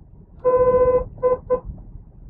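Vehicle horn: one long honk of about half a second, then two quick short toots, all on one steady pitch.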